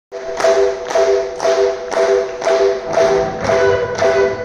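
Live band starting a song: one chord struck over and over, about twice a second, with low notes and higher tones joining from about three seconds in.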